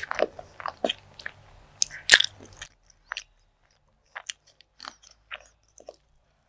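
Close-miked chewing of a mouthful of food: wet clicks and smacks come thick for the first two and a half seconds, loudest about two seconds in, then thin out to scattered single clicks.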